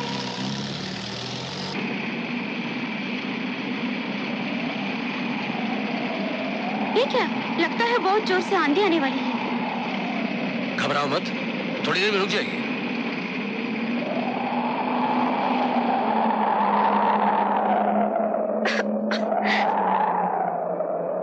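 A jeep engine running steadily under a howling wind that slowly rises and falls in pitch. Short vocal bursts come twice in the middle, and three sharp clicks sound near the end.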